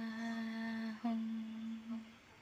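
A singer humming one long steady note with no accompaniment, closing a Shiva devotional song. The note breaks off briefly about halfway and is taken up again at the same pitch.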